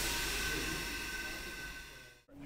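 Steady hiss and hum of still-house machinery, with a thin high steady tone running through it, fading away near the end.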